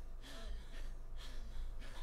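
A man gasping, sharp breathy intakes of breath in shocked surprise, two of them about halfway through and near the end.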